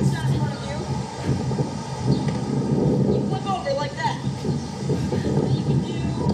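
Indistinct voices over a steady low rumbling noise.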